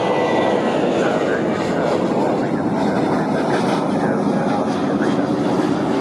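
Boeing 787 Dreamliner's turbofan engines running steadily at taxi power.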